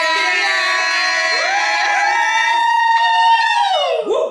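Several women's voices holding a long, drawn-out 'yeah' cheer together, more voices sliding in about a second and a half in, the notes falling away just before the end.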